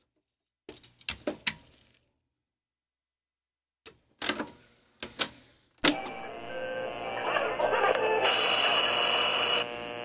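Clicks and clunks from the transport controls of a three-motor, direct-drive auto-reverse reel-to-reel tape deck, with a silent gap between them; about six seconds in, playback starts and recorded music from the tape plays steadily.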